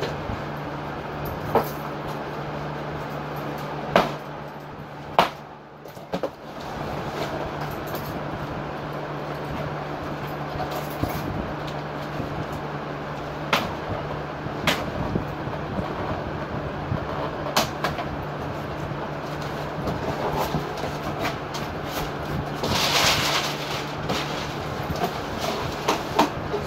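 Large cardboard shipping box being handled and shifted: scattered sharp knocks and a brief scrape near the end, over a steady noisy background hum.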